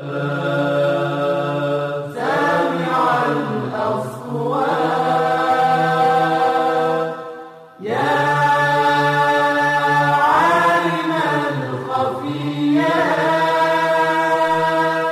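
Vocal chant with held, ornamented notes that bend up and down, sung in two long phrases with a short break near the middle, as the programme's title ident.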